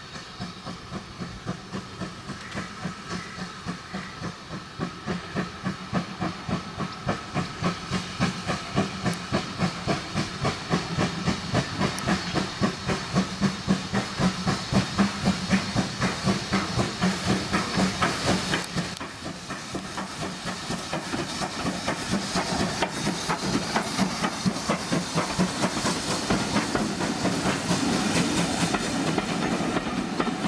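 Steam locomotive hauling a train, its exhaust chuffing at about two and a half beats a second and growing louder as it approaches. Near the end the beats blend with the running noise of the coaches passing close.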